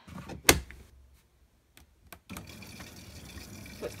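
Miele front-loading washing machine starting a wash: the detergent drawer shuts with a sharp knock about half a second in, then a couple of faint clicks, and from a little past halfway water runs in through the inlet as a steady hiss.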